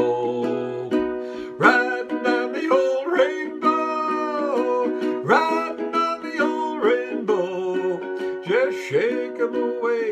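A Lanikai ukulele strummed in a steady rhythm, with a man's voice singing along over it.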